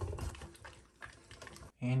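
Sausage meat being forced through a stuffer tube into a casing: many small wet clicks and crackles from the filling casing.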